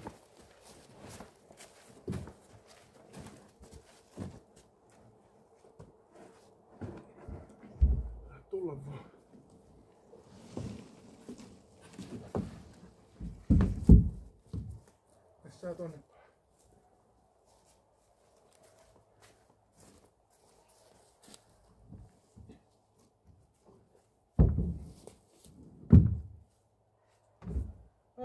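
A rowboat hull being handled and carried: scattered knocks and footsteps, with a heavy thump about halfway through. Near the end come two loud thuds as the upturned boat is set down onto wooden sawhorses.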